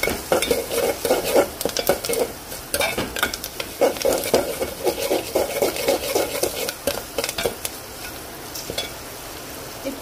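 A spoon stirring and scraping a tadka of garlic cloves, green chillies and curry leaves frying in oil in a metal pot, with repeated scrapes and clinks over a steady sizzle. About three-quarters of the way through the stirring stops, leaving only a quieter sizzle.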